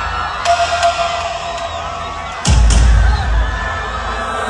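Live concert crowd cheering and singing along over amplified band music, with heavy bass coming in louder about two and a half seconds in.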